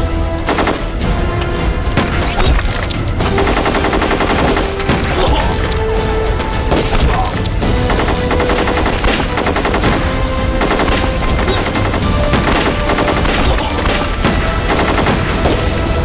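Dense, continuous machine-gun and rifle fire: volleys of rapid shots, heavy and unbroken.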